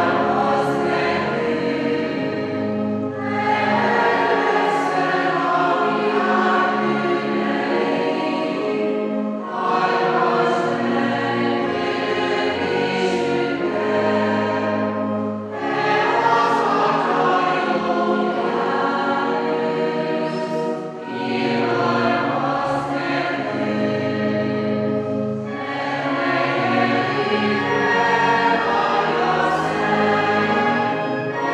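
A hymn sung by many voices in a church, in long held phrases of about five or six seconds with short breaks between them.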